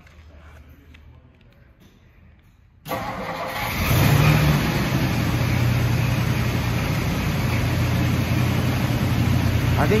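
1959 Ford Skyliner's V8 engine being started: it catches about three seconds in, picks up briefly a second later, then runs steadily at idle.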